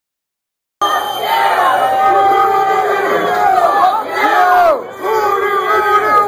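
Concert crowd cheering and shouting, many voices overlapping, starting about a second in.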